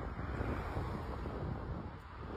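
Wind buffeting the phone's microphone: a steady, fluctuating low rumble.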